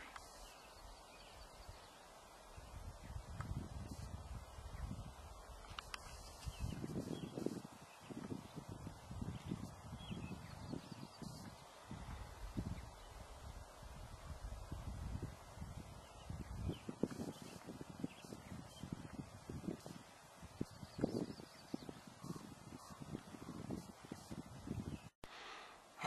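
Irregular low rumbling gusts of wind buffeting the microphone.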